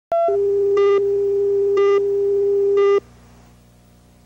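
Reference tone over a videotape slate: a short higher blip, then a steady mid-pitched tone with a higher beep laid over it once a second, three times. It cuts off suddenly about three seconds in, leaving a faint hum.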